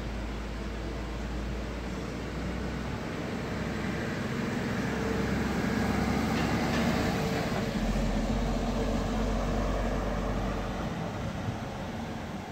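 A car driving past on a town street, its tyre and engine noise rising to a peak about halfway and then fading, over a steady traffic hum.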